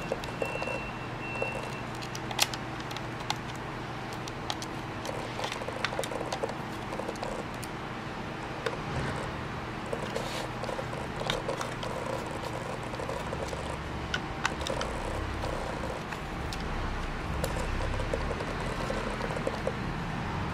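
Screwdriver backing small screws out of a circuit board in a plastic indicator housing: scattered light clicks and ticks of metal tip and screws on plastic, a few seconds apart, over a steady background noise.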